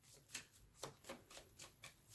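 A deck of tarot cards being shuffled by hand: faint, quick flicks and clicks of card edges, about four or five a second.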